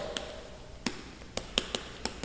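Chalk writing on a chalkboard: a handful of short, sharp taps and ticks as the chalk strikes and drags across the board.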